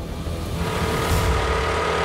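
A car's engine running as the car pulls up, the sound swelling about half a second in.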